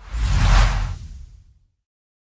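A whoosh sound effect with a deep low rumble, swelling up over about half a second and fading out by about a second and a half in.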